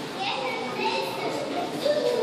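Background chatter of several voices, children's among them, talking and calling over one another with no words made out.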